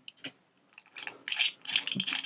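Dial of a Brinks combination padlock being turned by hand, giving a quick run of small clicks and ticks that starts a little under a second in.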